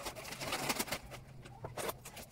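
A bird cooing, with a few sharp clicks or light knocks.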